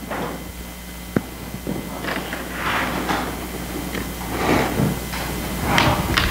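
A Bible being closed and handled: a sharp click about a second in, then paper rustling and soft shuffling.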